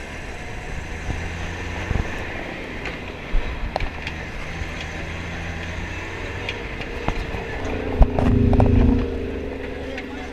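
Toyota Land Cruiser driving on a rough dirt track: steady engine and road noise with scattered knocks and rattles from the bumps, swelling louder near the end.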